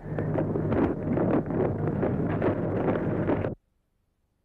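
Wind buffeting an outdoor microphone, an uneven rough rumble over a steady low hum. The sound cuts off suddenly about three and a half seconds in.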